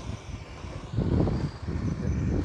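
Low wind rumble on the microphone with road noise from a slowly moving electric bike, swelling louder for a moment about a second in.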